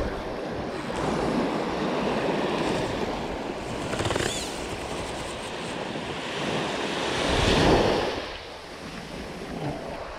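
Small surf breaking and washing up a sandy beach, with wind on the microphone; one wash swells loudest about seven and a half seconds in, then eases off.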